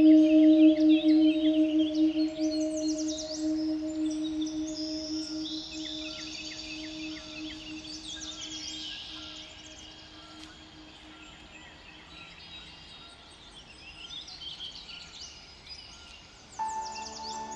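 A sustained low humming tone slowly fading away, with birds chirping throughout. The whole passage dies down to quiet near the end, as a track in a music mix winds out.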